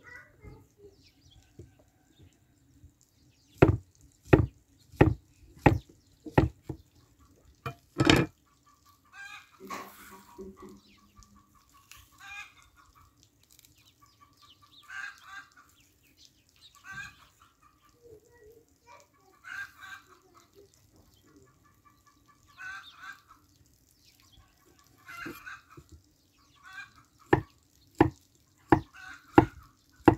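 Kitchen knife slicing bananas on a thick wooden log board: about seven sharp knocks between four and eight seconds in, and more near the end. In between, chickens cluck in short calls every two to three seconds.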